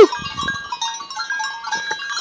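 Herd of goats moving over rocky ground, small bells clinking in many short ringing tones at different pitches. A loud wavering bleat ends right at the start.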